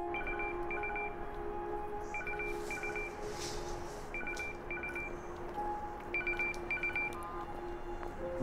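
Mobile phone ringing: a pulsing electronic ringtone of short two-pitch trills, four pairs about two seconds apart, over soft sustained background music.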